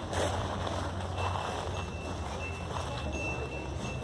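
Outdoor background noise with a steady low hum and a faint, high, intermittent beeping from about a second in.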